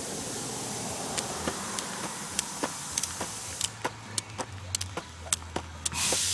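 A jump rope being turned and jumped, its rope slapping the ground in sharp clicks about three times a second, starting about a second in, over a steady hiss.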